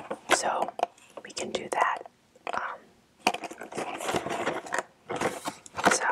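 Soft, whispered speech in short phrases, with light clicks and taps from a cardboard box being handled and tilted.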